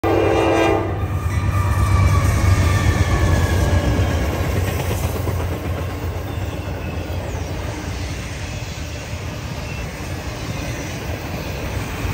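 Norfolk Southern AC44C6M diesel locomotive's horn sounding and cutting off under a second in. Then the deep rumble of the lead locomotive and a trailing BNSF Dash 9 as they pass close by, easing into the steady rolling clatter of intermodal cars.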